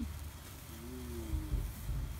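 Low rumble on the microphone that swells in a few bursts near the end, with a person's brief wordless, drawn-out vocal sound in the middle.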